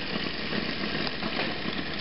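Homemade Bedini SSG multi-coil battery charger running, its four-magnet rotor spinning between the coils with a steady, fast buzzing whir.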